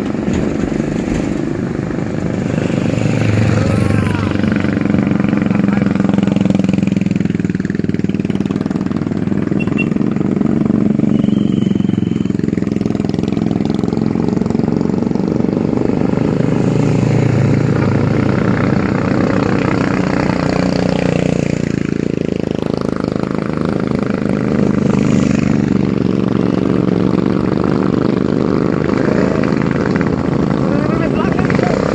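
Several big-displacement motorcycles riding up a climb in a group past the camera. Their engines run under load, and the engine notes rise and fall as the bikes come and go.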